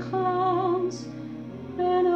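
A woman singing a tender song over a backing accompaniment, holding long notes with a slight vibrato.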